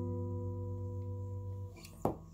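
A chord on a 1994 Fender American Standard Telecaster with a maple neck, played through an amp, rings out and slowly fades, then is cut off near the end.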